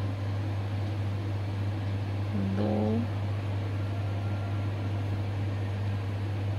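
A steady low hum over a constant background hiss, with one short spoken syllable about two and a half seconds in.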